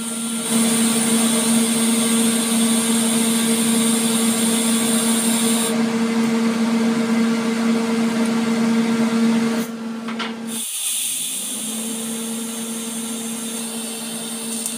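TIG welding arc on a thin steel exhaust pipe: a steady hum with a hiss over it. It cuts off suddenly about ten seconds in and starts again a second or two later.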